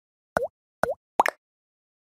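Three short plop sound effects from an animated logo intro, about half a second apart. Each is a quick downward-then-upward swoop in pitch, and the last one is doubled.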